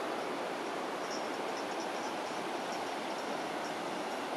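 Steady, even rushing background noise of an open mountainside, with faint, short high ticks recurring from about a second in.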